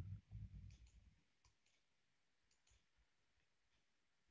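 Faint computer mouse clicks, about three pairs of quick clicks spread over the first three seconds, over near-silent room tone. A brief low rumble in the first second is the loudest sound.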